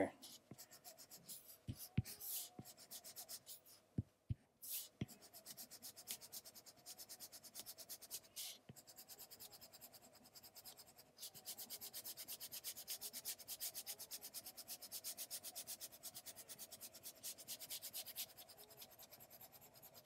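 Faint stylus strokes rubbing on an iPad screen as shading is laid in, with a few light taps in the first seconds. After that come quick, even back-and-forth strokes, several a second, through most of the second half.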